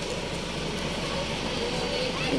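A vehicle engine running steadily at idle, a low even hum with a fine regular pulse, with faint voices behind it.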